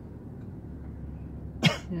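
A single short cough about one and a half seconds in, over the low steady hum of a car's cabin.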